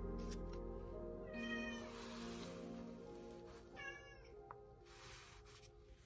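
A cat meowing twice, once about a second and a half in and again around four seconds, over soft background music that fades away. Between the meows there is a light rustle of the paper-backed canvas being turned on the towel.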